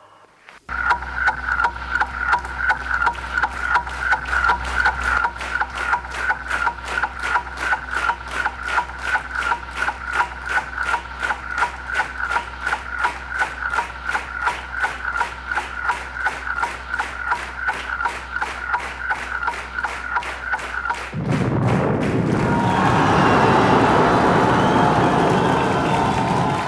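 Fast, even clock-like ticking over a steady low drone, counting down to the Nowruz New Year moment. About 21 seconds in it stops and gives way to a loud crowd cheering and applauding.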